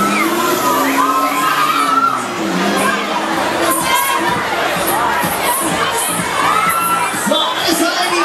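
Riders on a Jumper (Disco Jump) fairground ride screaming and shouting together as their seat row is swung up and down, many shrill voices overlapping.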